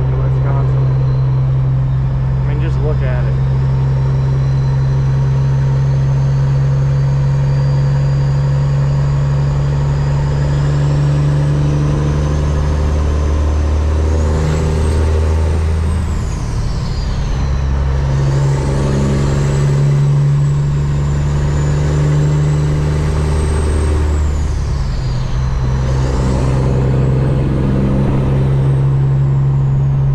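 Semi truck's diesel engine heard from inside the cab, pulling steadily, with a high turbo whistle that rises under load. Twice, around the middle and again about three-quarters through, the whistle drops away and the engine note dips and comes back, as at gear changes.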